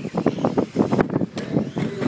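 Radio-controlled off-road race cars running on a dirt track, heard as an irregular crackling noise with no steady motor whine standing out.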